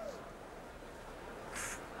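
Faint arena background noise in a pause between voices, with a short breathy hiss about one and a half seconds in.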